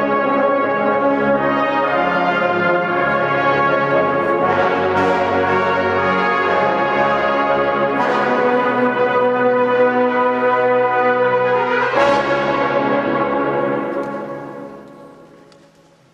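Brass ensemble of trombones, tuba and other brass playing sustained chords that change about every four seconds, in a large church. The last chord comes in about twelve seconds in, is held, and fades away over the last two seconds.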